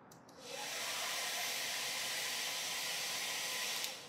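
Handheld corded hair dryer blowing: switched on about half a second in and cut off just before the end, a steady high hiss with a faint whine under it.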